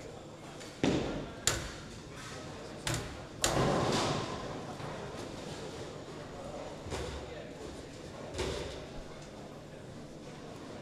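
Bowling alley lane noise: a run of sharp knocks and crashes from balls and pins, the loudest crash about three and a half seconds in with a rolling rumble after it, and two lighter knocks later, over the steady hum of a large hall.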